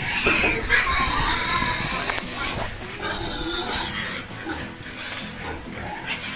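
A domestic pig calling in its pen, loudest and most continuous in the first two seconds and more broken after.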